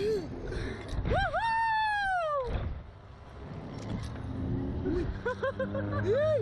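A rider on a slingshot thrill ride screaming: one long high cry about a second in that slides down in pitch, then shorter cries near the end. A low rumble of rushing wind on the ride-mounted microphone runs underneath.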